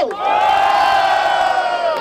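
A man's single long, held shout through a microphone and PA, calling out the winner of the battle, over a cheering crowd. The shout trails off just before the end.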